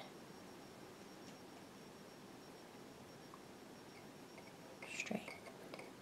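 Near silence: room tone, with a short, faint breath or whisper about five seconds in.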